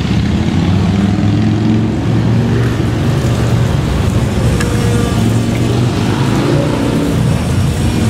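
Steady low rumble of road traffic, a vehicle engine running close by.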